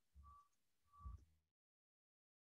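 Near silence: two faint short beeps about a second apart, each with a soft low thud, then the sound cuts off to dead silence about one and a half seconds in.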